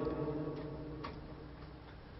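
The last word of a man's speech fading out over about a second, followed by quiet room tone with two faint ticks.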